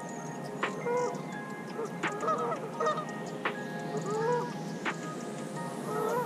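Geese honking again and again in short, bending calls, over background music with held tones and a light regular tick.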